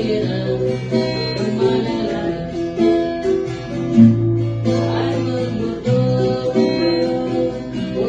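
An acoustic guitar and a ukulele playing a tune together.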